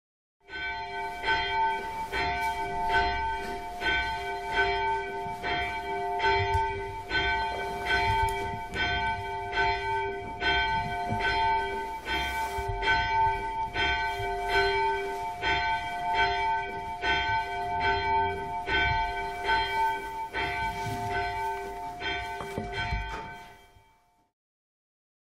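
Church bells ringing in a steady rhythm, struck a little more than once a second, their tones ringing on between strikes; the ringing fades out just before the end.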